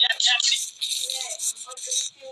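Rap music with vocals playing. About half a second in, the voice drops back and a bright, high-pitched rattling jingle fills the rest.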